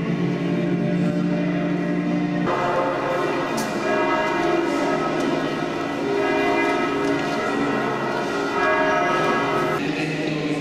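Church bells ringing in a continuous peal, many overlapping tones sounding together, the mix of pitches changing a couple of seconds in.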